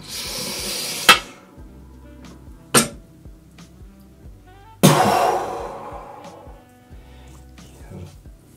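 A man hissing and puffing out breath against the sting of aftershave lotion on freshly shaved skin: a hissing breath at the start, two sharp clicks, and a loud blown-out breath about five seconds in that fades away. Faint background music runs underneath.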